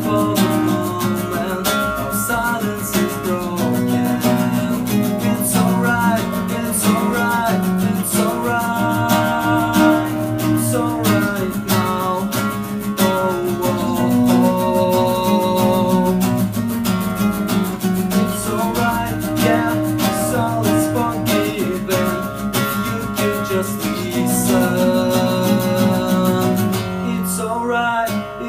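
Two layered nylon-string classical guitars playing together, sustained chords under a moving fingerpicked melody line.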